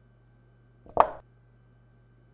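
A single short chess-move sound effect, like a piece being set down on a board, about a second in, marking a black bishop's move.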